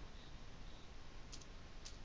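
A few faint keystrokes on a computer keyboard as a short piece of code is typed.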